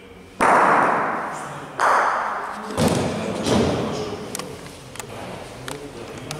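Bocce balls striking on an indoor synthetic court: a sudden loud hit about half a second in that trails off, a second one near two seconds, then heavier, deeper thumps around three seconds, with lighter clicks after.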